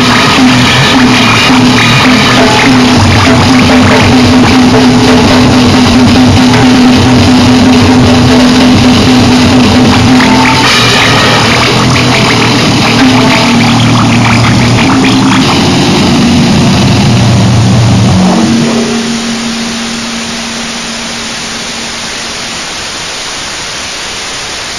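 Noisecore/gorenoise recording: a loud, dense wall of distorted noise with a low droning hum. About eighteen seconds in it falls to a quieter, steady static hiss.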